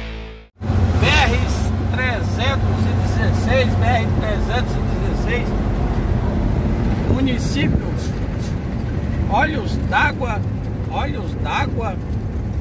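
Intro music cuts off about half a second in. Then a Mercedes-Benz truck is driving on the highway, heard from inside its cab: a steady low diesel engine drone with road noise, and a voice speaking over it.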